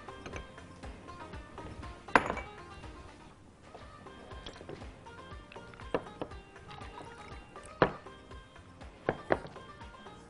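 Background music with a few sharp knocks and clinks of glass jars being handled on a countertop, the loudest about two seconds in and again near eight seconds.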